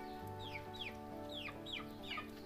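Chickens calling in a string of short, high peeps that fall in pitch, two or three a second, over background music with held notes.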